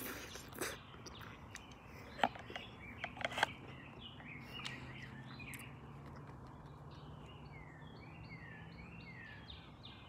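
Wild birds chirping and calling in the trees, with a run of short falling chirps near the end. A few sharp clicks and knocks stand out in the first few seconds, the loudest about three and a half seconds in.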